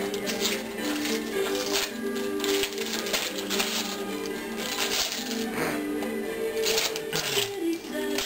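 Music playing with held, stepping notes, over repeated crinkling and tearing of wrapping paper as a small gift is unwrapped.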